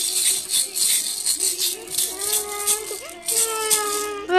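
A baby's rattle toy shaken rapidly. About halfway through, the baby starts fussing with a whiny, drawn-out cry.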